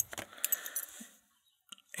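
Two small old Eagle Lock keys on a ring clinking faintly as they are handled, with a few light ticks in the first second and another couple near the end.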